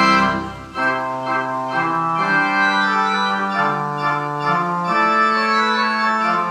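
Organ playing slow music in held chords. One phrase dies away just after the start, and the next begins about a second in, over a slowly moving bass line.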